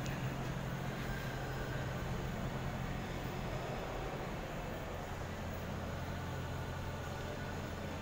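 Steady low hum and hiss of a large, nearly empty indoor terminal hall, the building's background drone with a faint steady tone above it.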